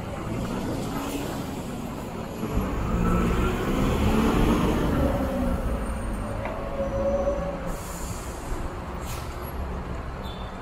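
Diesel city bus driving past close, its engine rising to a peak mid-way and then fading, with a whining pitch that climbs as it pulls away. Low rumble of other buses runs underneath, and there is a short hiss near the end.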